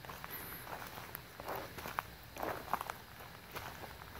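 Footsteps crunching through dry leaf litter and sticks, with irregular crackling and a few sharper twig snaps around two to three seconds in.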